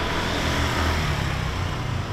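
Steady street traffic: a motor vehicle's engine running with a low hum under a broad wash of road noise.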